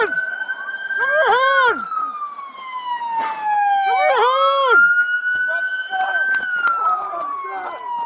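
Police car siren wailing, its pitch slowly rising and falling in long sweeps, with a voice shouting over it three times.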